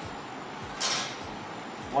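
Scissors cutting into the folded paper tail of a paper rocket along its crease: one short cut about a second in, over a steady background hiss.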